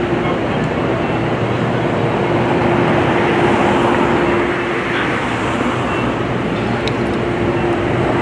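Steady city street traffic noise, with a steady humming tone that breaks off about five seconds in and comes back near the end.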